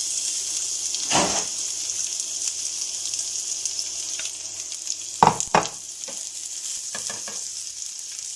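Diced onions sizzling in hot oil in a frying pan, a steady high hiss. A few short knocks sound about a second in and again around five to seven seconds in.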